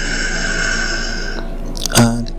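A person's long, audible breath, hissing for about a second and a half and then stopping.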